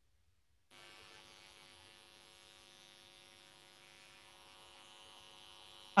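Faint, steady electrical hum and buzz. It starts abruptly about a second in after dead silence and does not change.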